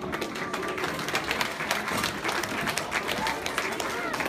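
Audience applauding, with voices mixed in; the last note of the show's music fades out just under a second in.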